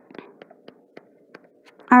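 Faint, scattered small ticks and soft rustling, as of paper being handled, during a pause in speech. A voice starts again near the end.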